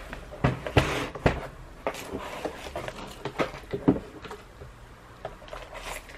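Cardboard box and packaging being handled as a new laptop is unpacked: a string of light knocks, taps and rustles, busiest in the first second or so and thinning out later.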